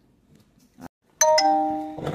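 A two-note ding-dong chime, like a doorbell, starts suddenly about a second in, loud and ringing, and fades slowly; a faint click comes just before it.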